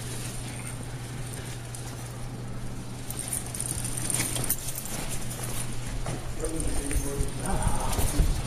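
A restraint chair is wheeled along a hard corridor floor amid officers' footsteps, with scattered clicks and knocks over a steady low hum. Muffled voices come in near the end.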